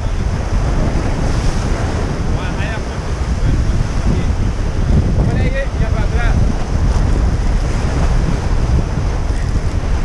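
Sea surf breaking and washing over shoreline rocks, with strong wind buffeting the microphone.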